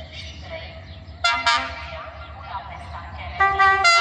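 Horn of the approaching GM-class diesel-electric locomotive 641219-6, sounding a short double toot about a second in and a longer, louder blast near the end.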